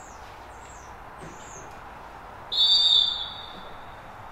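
Referee's whistle blown once for kick-off: one long, shrill blast starting about two and a half seconds in and lasting just over a second.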